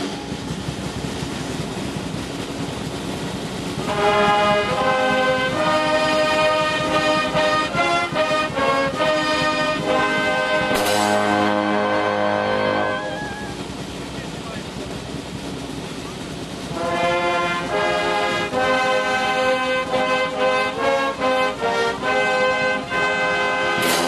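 Military brass band playing a march with trombones, tubas and cymbals. It is softer for the first few seconds, then plays at full strength with a cymbal crash about eleven seconds in. It drops back for a few seconds and swells again near the end.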